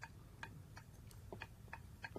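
Faint, slightly uneven clicks, about two a second, of a utensil knocking against a mixing bowl as something is stirred.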